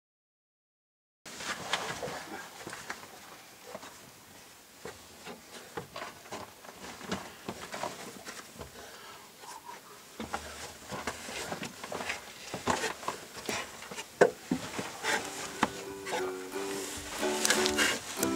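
Knocks and scuffs of boots and hands on a wooden mine ladder as people climb it, starting after about a second of silence. Ukulele music comes in near the end.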